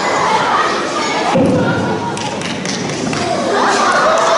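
Voices in a hall, with one heavy thump about a second and a half in.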